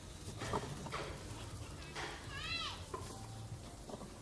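Faint handling knocks as a fabric grille is pulled off a wooden speaker cabinet. About two and a half seconds in, a short, high animal call in the background rises and then falls in pitch.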